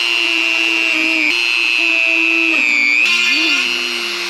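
Dremel rotary tool running at high speed with a steady whine as its bit bores screw holes through an HDPE plastic plate; a little past halfway the pitch sags under load as the bit bites, then climbs back.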